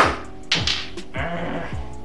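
A cue tip sharply clicks against the cue ball of a miniature pool table at the start. A second, softer clack of the rolling ball striking comes about half a second later. Background music with a steady beat plays under both.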